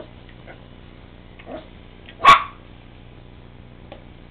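Yorkshire terrier puppy barking once, a short sharp bark a little past halfway, with a fainter short sound about a second before it.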